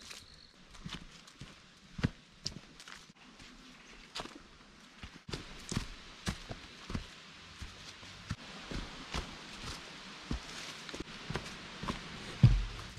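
Footsteps of a hiker walking along a dirt forest trail covered in dry fallen leaves, about two steps a second.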